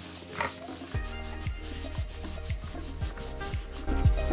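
Cotton pad rubbing a wet, foamy scrub over the skin on the back of a hand. Background music plays underneath, with a bass beat of about two strikes a second coming in about a second in.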